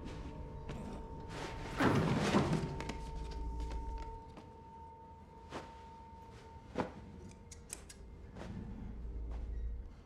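Film soundtrack: a low drone and a thin held tone, with a loud rough handling noise about two seconds in as gloved hands work over a body on a table, then a few sharp knocks.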